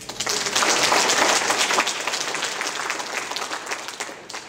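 Audience applauding: the clapping starts suddenly, is loudest about a second in, and tapers off near the end.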